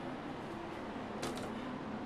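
Steady low hum inside a small elevator car, with a couple of faint clicks a little past a second in.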